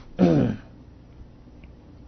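A man's single short vocal burst, a laugh-like sound lasting about half a second, falling in pitch.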